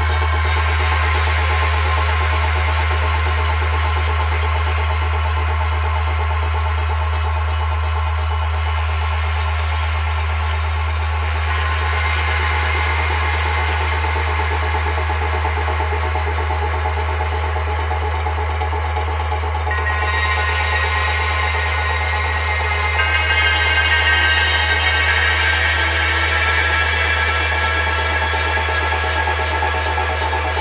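Experimental percussion music: a fast, even pulse over a steady deep drone, with many sustained ringing tones from metal percussion of copper, zinc and nickel. About two-thirds of the way through, higher ringing tones come in on top.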